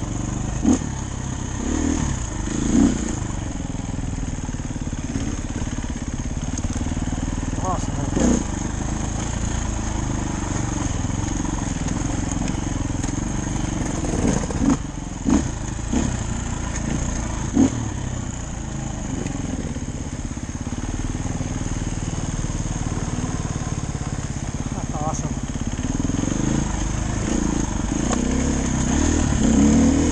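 Dirt bike engine running steadily while riding a rough forest trail, with several short, sharp louder bursts along the way and a louder surge near the end.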